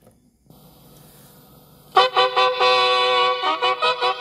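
Sharp GF-4500 boombox playing a cassette through its built-in speakers: faint tape hiss first, then music starts loudly about two seconds in. The tape deck runs smoothly.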